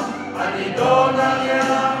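Men's choir singing a hymn together, with a brief break between phrases at the start before the voices come back in.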